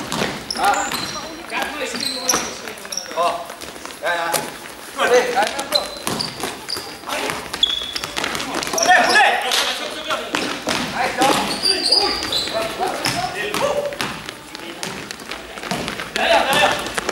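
A basketball being dribbled on a sports-hall floor during play, with repeated bounces and footfalls, brief high squeaks of shoes on the court, and players calling out.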